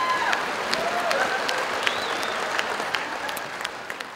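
Theatre audience applauding after a joke, the applause dying away toward the end.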